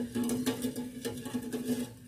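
Soft background music holding one steady low note, with faint clicks of a metal spoon stirring coconut milk in an enamel saucepan.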